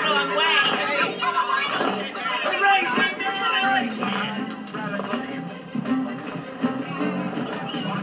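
Animated-film soundtrack played through a television: music under a crowd of cartoon animal voices shouting and crying out as they stampede, with one voice calling "Raging mammoth!" about four seconds in.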